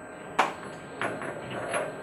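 A sharp plastic-on-metal click about half a second in, then faint scraping and handling noise: the broken rubberized plastic body of a U-lock being fitted back onto its steel crossbar by hand.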